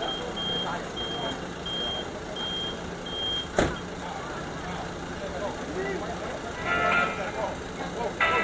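A vehicle's reversing alarm beeping about five times at an even pace, over a steady low engine hum, with a single sharp knock shortly after the beeps stop.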